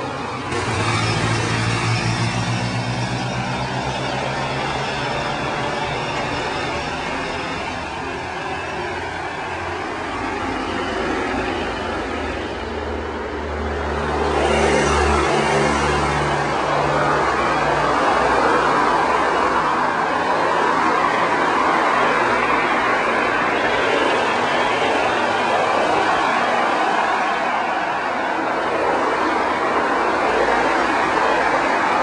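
Cars driving past one after another. An engine hum falls in pitch as one car goes by about a second in, a louder engine passes about halfway, and steady tyre and road noise follows.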